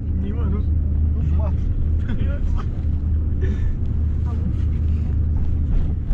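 Steady low rumble of a passenger minibus on the move, its engine and road noise heard from inside the cabin, with passengers' voices over it.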